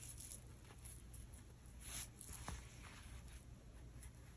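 Faint rustling of hands handling a super-bulky yarn crochet hat and pulling a plastic yarn needle through its top stitches, with a small tick about two and a half seconds in.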